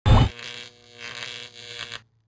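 Outro jingle: a deep low hit, then a short run of music that cuts off suddenly.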